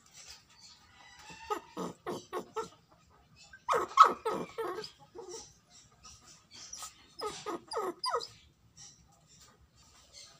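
A dog giving three runs of short, quick calls, four or five calls to a run, the loudest run in the middle.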